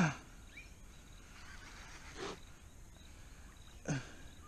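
A man's short grunt at the start and a fainter vocal sound about two seconds in, as he strains against a fish on the line, over low steady creekside background noise.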